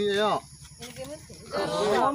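A man's voice speaking, trailing off after a moment, then a loud, drawn-out "oh" near the end.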